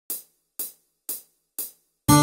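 Four evenly spaced hi-hat ticks, about two a second, from a Yamaha Tyros 5 arranger keyboard's drum sounds, counting in the song.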